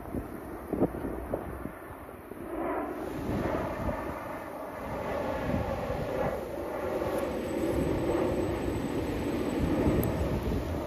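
A slow procession of emergency vehicles, led by an ambulance and a fire engine, passing on a rain-wet road: engines running and tyres on the wet pavement. The sound grows louder from about three seconds in as the ambulance draws near. A couple of light knocks come in the first two seconds.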